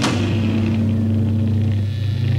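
A rock band's last loud hit of drums and cymbals right at the start, then a low amplified note and amplifier hum left ringing steadily, fading near the end.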